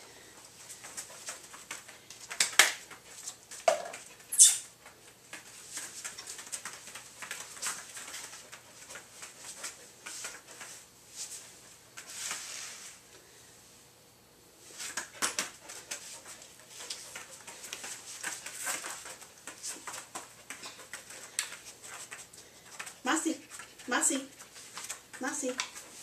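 Scattered clicks, knocks and rustles of a dog and its handler moving about on foam floor mats during a training session, with two sharper clicks about two and a half and four and a half seconds in.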